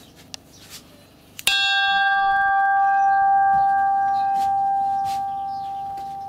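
A small hanging bell, cast in 1774, struck once by its clapper pulled on a cord about a second and a half in, then ringing on with one clear tone and higher overtones that slowly fade.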